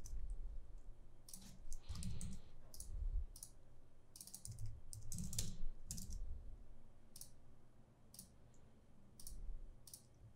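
Computer keyboard keystrokes and mouse clicks, sharp and irregular, with a few dull low thumps among them.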